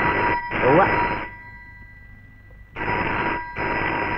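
Telephone bell ringing in a double-ring pattern: two short rings, a pause of about a second and a half, then two more.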